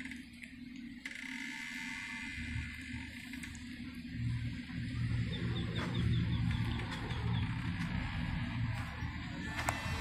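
Outdoor background: a low, uneven rumble, with a quick run of about ten high chirps, typical of a small bird, about five seconds in.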